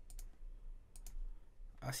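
Computer mouse clicking: two sharp double ticks about a second apart.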